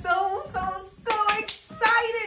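Hand claps: a few sharp, quick claps in the second half, over a voice singing.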